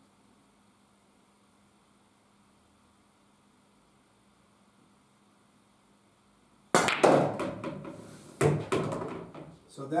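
Straight pool break shot on a pool table: a cue stick strikes the cue ball, which is drawn into the rack, giving a sudden loud clack and then pool balls clattering and knocking against each other and the rails for about three seconds. A second sharp knock comes about a second and a half after the first.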